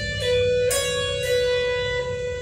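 Solid-body electric guitar playing single notes of a B minor pentatonic lick. There is one picked note about a third of the way in, and slurred (legato) note changes come between the picks. The notes ring on.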